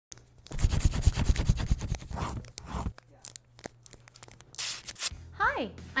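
Paper crumpling and tearing sound effects, dense with low thuds for the first few seconds and then sparse clicks, ending in a short falling pitched tone just before the end.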